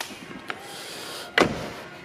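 The driver's door of a 2007 Mercedes-Benz C230 sedan being shut: a faint click, then one thud as it closes about one and a half seconds in.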